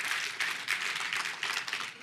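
Congregation clapping and applauding in response to a call for an amen, the clapping thinning out near the end.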